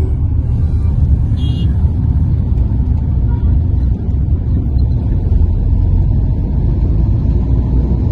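Steady low rumble of a car on the move, heard from inside the cabin: engine and road noise while driving in city traffic.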